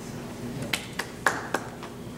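One person clapping four times in quick succession, sharp and evenly spaced, over a low steady room hum.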